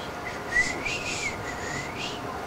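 A person whistling one continuous, breathy note that glides up and back down in pitch for about a second and a half, over a faint steady hum.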